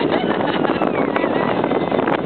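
Autocross car engines running on the track, mixed with spectators' voices and wind buffeting the microphone, all at a steady loud level.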